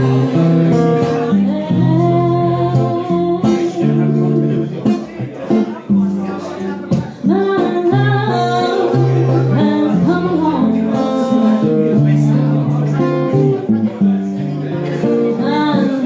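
A woman singing a song live, accompanied by an acoustic guitar.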